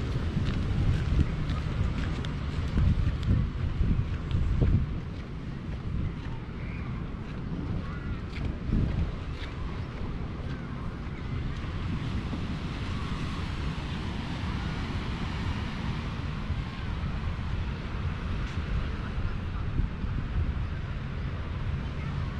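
Wind buffeting the microphone in gusts, heaviest in the first five seconds or so, over a steady outdoor hiss.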